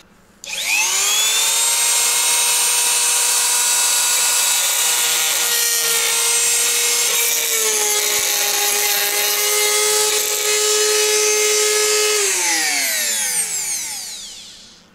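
Handheld rotary tool with an abrasive grinding stone spinning up, then running at a steady high whine while grinding away a step inside a metal carburetor intake fitting. Its pitch dips slightly about halfway through. Near the end it spins down with a falling pitch.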